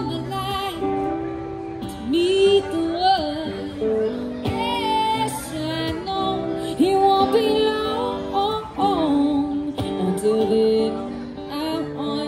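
A woman singing a slow song with vibrato, live, over an acoustic guitar and an electric guitar.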